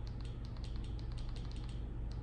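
Faint, rapid, evenly spaced clicks while the Fire TV home-screen menu is scrolled with the remote, over a low steady hum.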